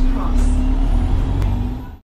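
London bus interior running noise: a low engine rumble with a steady hum, a short burst of air hiss about half a second in, and a click near the end.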